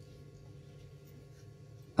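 Faint room tone in a pause between sentences: a low steady hum through the hall's microphone and speaker system.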